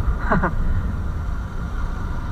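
Yamaha YZF-R15 motorcycle on the move, heard from an onboard camera as a steady low rumble of engine and wind on the microphone.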